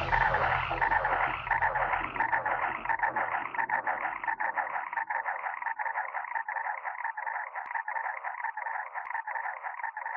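Outro of an electronic drum and bass remix: the beat and bass have dropped away, leaving a thin, fast-fluttering crackly texture in the middle range that slowly fades.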